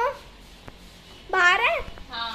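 A short, high-pitched wordless cry that holds, then rises and falls in pitch, about a second and a half in, with the tail of a shorter rising cry at the very start.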